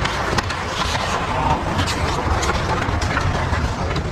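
Hockey skates scraping and carving on the ice, with scattered sharp clicks of sticks and puck, over a steady low rumble.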